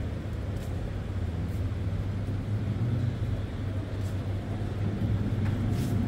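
Steady low hum of room noise inside a large hangar, with a few faint light ticks.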